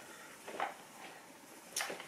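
Soft handling sounds of a padded fabric travel pouch being held open and moved, with attachments shifting inside: a small rustle about half a second in and a sharper, brief rustle near the end.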